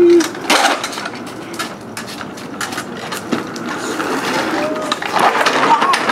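Plastic wheels of a Razor Flash Rider 360 drift trike rolling and skidding on concrete as it spins, a continuous scraping rumble broken by many sharp clicks and rattles. A voice cries out briefly near the end as the trike tips over backwards.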